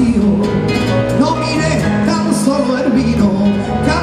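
A male voice singing a Spanish-language song live into a microphone, over nylon-string Spanish guitar accompaniment in a flamenco-pop style.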